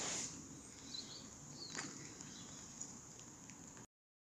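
A short rushing burst at the start, then a single sharp snap a little under two seconds in, over faint bird chirps and a steady faint high hiss. The sound cuts off abruptly just before the end.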